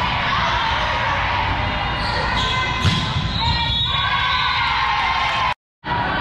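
Echoing gym noise during a volleyball rally: many overlapping voices of players and spectators, with a sharp thump of the ball being struck about three seconds in. The sound cuts out for a moment near the end.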